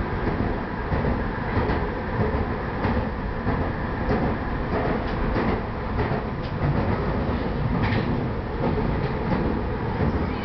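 PATCO Budd-built rapid-transit car running at speed, heard from inside the car: steady wheel-on-rail running noise with faint steady tones and scattered clicks.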